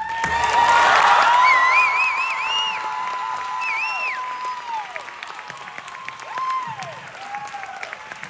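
Audience applauding and cheering, with high whoops and wavering calls over the clapping. The applause swells to its loudest about a second in, then slowly tapers off.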